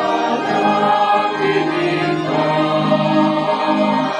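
A church choir singing a hymn, with sustained organ accompaniment underneath.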